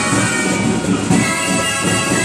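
Catalan traditional wind ensemble playing: gralles (reedy double-reed shawms) holding a tune over a regular drum beat.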